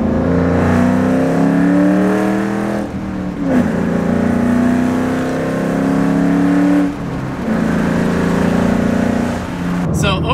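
A 2006 Ford Mustang GT's 4.6-litre three-valve V8, with a Roush cold air intake and catless exhaust, pulling hard in a low gear after a downshift, heard from inside the cabin. The engine note climbs for about three seconds, dips briefly and climbs again, then drops off suddenly at about seven seconds into a lower, steadier run.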